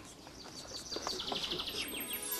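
A songbird singing: a fast trill of short high notes, about ten a second, stepping down gently in pitch, starting a little under a second in.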